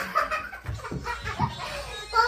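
Several people laughing, with excited high-pitched voices.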